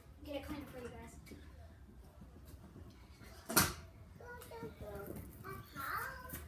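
A small child's voice chattering on and off, and one sharp clatter about three and a half seconds in: a kick scooter's metal deck striking paving.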